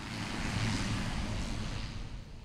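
Single-engine turboprop airplane climbing away just after takeoff: a steady rush of engine and propeller noise that eases slightly near the end.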